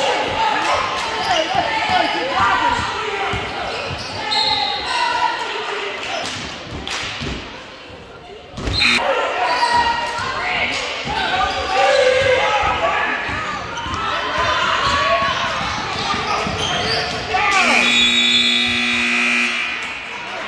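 Basketball game in a gym: voices and shouts echo around the hall and a ball is dribbled. Near the end the scoreboard horn sounds once, steadily, for about two seconds, signalling the end of the quarter.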